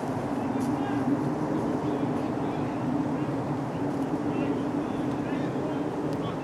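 Indistinct, distant voices from a group of players gathered in a huddle, over a steady low background hum.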